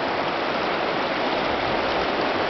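Steady rushing of a rocky Appalachian trout stream flowing close by.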